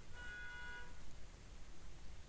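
A faint, high pitched tone with several overtones, held for about the first second, over a steady low background hum.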